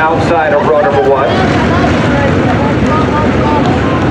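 A pack of IMCA sport modified race cars with V8 engines running together around a dirt oval, their several engine notes rising and falling over one another.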